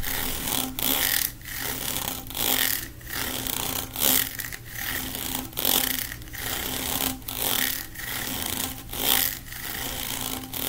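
Fingers rubbing and scraping along the ridges of a ribbed plastic tube, giving a run of rasping strokes, about three every two seconds.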